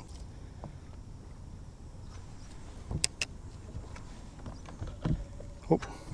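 Quiet open-air background on a small fishing boat: a low steady rumble, broken by two sharp clicks close together about three seconds in.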